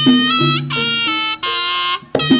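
Jaranan gamelan music led by a slompret, the Javanese shawm, playing a reedy melody that steps between notes over sustained low gamelan tones. The melody breaks off briefly about one and a half seconds in and again at the end.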